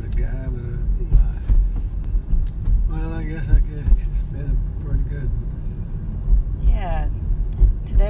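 Steady low rumble of a moving car's engine and tyres, heard from inside the cabin, with a few brief snatches of speech.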